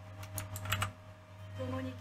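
A quick run of several sharp clicks within the first second, like keys being tapped, over a low steady hum.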